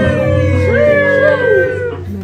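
Music playing: a long held note that sinks slowly in pitch, sounded twice, over a steady low backing.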